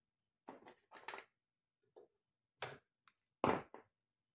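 Short clattering knocks of small objects being picked up and set down on a workbench: about six separate knocks, the loudest near the end.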